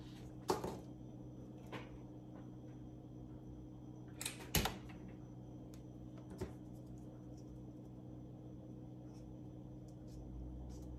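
Hands handling a craft egg and small items on a counter: a few light clicks and knocks, the loudest a pair about four and a half seconds in, over a steady low hum.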